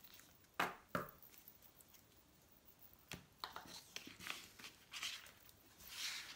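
Lenormand cards being gathered up from a wooden table: two sharp taps a little after the start, then soft sliding and light tapping of cards from about three seconds in.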